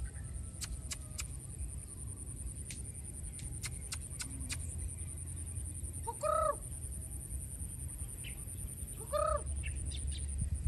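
Two short animal calls, about three seconds apart, each a quick run of pitched notes, over a steady high-pitched hum.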